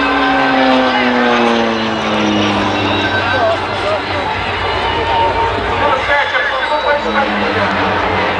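Embraer T-27 Tucano turboprop flying past overhead. Its propeller drone falls steadily in pitch over the first three seconds as it goes by, and another drone comes in near the end.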